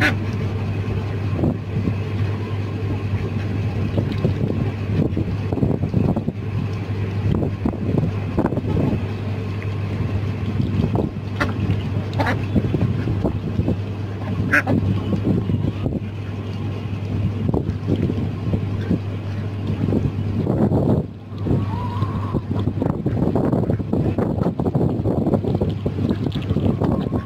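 Ducks and chickens feeding, with irregular short clicks and rustles as bills peck and dabble at food on a plastic tarp and in metal bowls, over a steady low hum.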